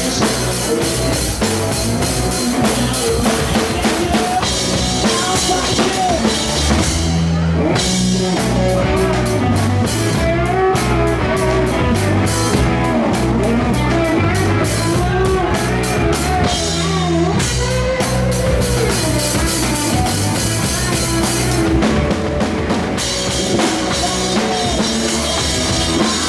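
Live rock band playing: electric guitar and drum kit with bass drum, and a male voice singing over them.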